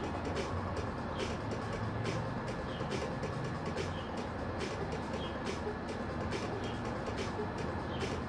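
Steady low background hum and room noise, with a few faint soft ticks scattered through it and no distinct louder sound.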